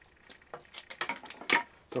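A series of light clicks and knocks of hard objects being handled on a workbench, loudest about a second and a half in: cut pieces of a carbon-composite hockey stick shaft and a caliper picked up off its plastic case.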